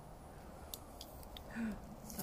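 A quiet lull with a few faint ticks, then a brief low voice-like sound about one and a half seconds in.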